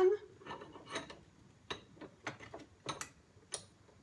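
Scattered light clicks and knocks as a piece of weathered timber is freed from a cast-iron bench vise and lifted out: the metal vise and the wood being handled on the bench.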